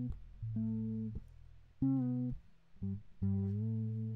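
Fretless electric bass played unaccompanied in octave double-stops: four held notes with short gaps between them. The last and longest slides up slightly in pitch as an ornament.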